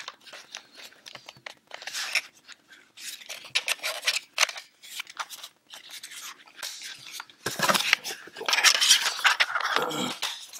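Plastic Raspberry Pi case being handled and snapped together: a run of small plastic clicks and scrapes, louder and denser in the last couple of seconds.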